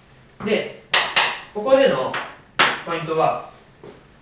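Chalk knocking and scraping on a blackboard as writing starts, with several sharp clacks.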